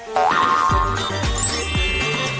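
Playful background music with cartoon boing sound effects: a rising boing just after the start, then three falling boings about half a second apart, and a high rising glissando near the end.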